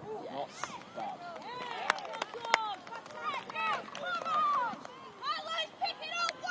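Shouting voices of players and spectators across an open football pitch, with two sharp knocks about two seconds in, half a second apart. Near the end the shouts rise higher and more excited as the goal is celebrated.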